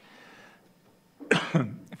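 A man's short cough into a close microphone, about a second and a quarter in, after a brief quiet pause.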